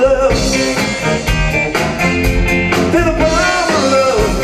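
A live rock band playing: a male lead singer's sung line over electric guitars, bass guitar and a drum kit.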